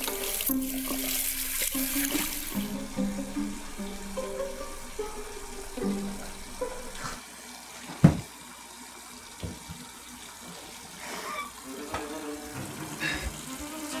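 Film score of slow, held low notes that step from pitch to pitch. A hiss like a running tap plays for the first couple of seconds and stops abruptly. About eight seconds in there is a single sharp knock, the loudest sound.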